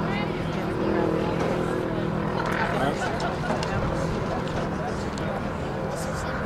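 Indistinct chatter of spectators in the stands, several voices overlapping with no clear words, over a steady low hum.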